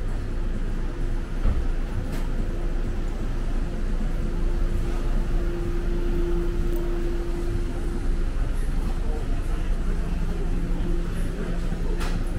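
Street ambience: a steady low rumble of traffic and vehicle engines with a faint continuous hum, and the voices of people passing by.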